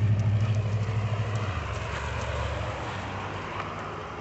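A car's engine running with a low, steady hum that fades steadily as it moves off, the deepest part dropping away about a second and a half in.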